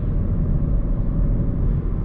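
Steady low rumble of engine and road noise inside the cabin of a Hyundai i30 Wagon under way in sport mode, the gearbox holding gears to slightly higher revs before shifting up. The source is its 160 hp mild-hybrid petrol engine.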